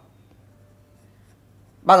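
Faint scratching of a stylus on a writing tablet while on-screen handwriting is erased; a man's voice starts again near the end.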